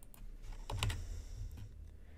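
A few keystrokes on a computer keyboard, short clicks bunched a little under a second in, as a value is typed into a field.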